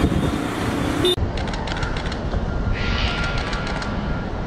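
Steady street traffic noise. After about a second, bursts of rapid sharp clicks come in, with a brief high tone near the end.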